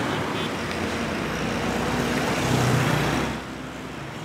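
City street traffic: motorbikes and cars running along the road, dropping away shortly before the end.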